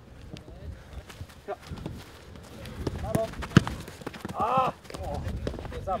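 Footballers running on grass and touching a football, with a string of soft thuds and one sharp, loud kick of the ball about three and a half seconds in. Short shouts from players come just before and about a second after the kick.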